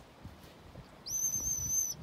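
A handler's single high whistle to a working sheepdog, starting about a second in and held for just under a second, with a quick rise at its start and a slight waver.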